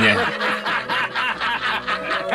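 A man laughing, a quick even run of chuckles.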